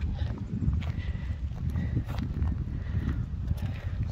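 Wind buffeting a phone microphone: a steady, fluttering low rumble, with a few faint clicks over it.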